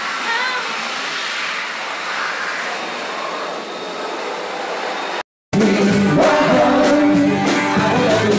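A woman's wavering voice over a steady rushing noise. After a sudden cut about five seconds in, a live rock band plays louder, with electric guitar, bass and drums.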